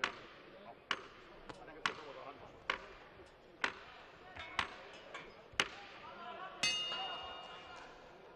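A series of sharp knocks about once a second, then, about six and a half seconds in, the ring bell is struck once and rings out as round two starts.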